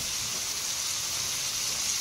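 Food frying in butter in a skillet on the stove: a steady sizzle.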